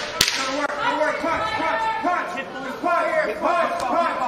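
A sharp smack just after the start, an impact as the fighters grapple through a takedown in the cage, with shouting voices throughout.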